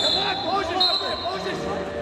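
A wrestling referee's whistle blown twice, two short shrill blasts, the second starting just under a second in, signalling the restart of action. Wrestling shoes squeak on the mat throughout.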